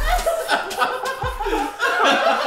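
A group of men laughing and chuckling together.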